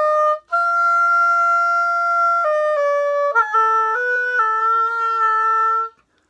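Oboe playing single sustained notes: a held F sounded with the fork fingering, then several short notes stepping down, and finally a long low note, B flat, held until it stops.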